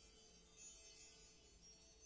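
Faint, high chiming tones, steady and shimmering, at near-silent level.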